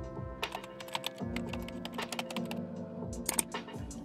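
A quick, irregular run of clicks over soft, steady background music.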